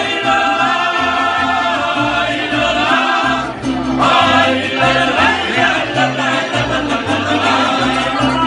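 Mariachi band playing live: violins and guitars over a steadily pulsing bass line, with voices singing together.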